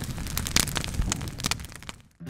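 Wood fire crackling, with frequent sharp pops over a low rush of flame, dying away near the end.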